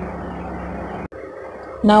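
Steady hiss with a low hum that cuts off abruptly about halfway through, leaving quieter room tone, then a woman's voice begins near the end.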